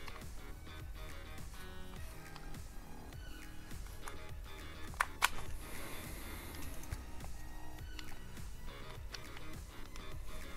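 Soft background music, with two sharp clicks about halfway through as plastic thermostat and valve-adapter parts are handled.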